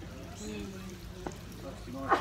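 Faint voices of other people talking in the background, with one short sharp click a little past the middle.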